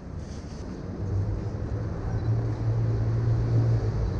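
A motor vehicle's engine passing on the street: a low hum that comes up about a second in and grows steadily louder.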